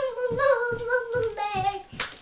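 A young girl singing one long phrase of held notes, with a low thud about four times a second underneath.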